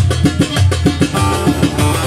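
Live Turkish saz music: a long-necked bağlama playing a melody over a steady drum beat.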